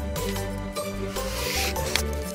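Background music with a paper swish of a book page being turned, a little over a second in, ending in a short click.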